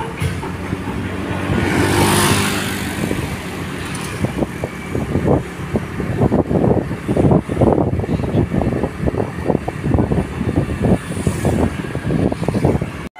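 A moving road vehicle's engine running steadily along a road, with the rushing sound of another vehicle passing about two seconds in. From about four seconds on the sound turns rough and choppy.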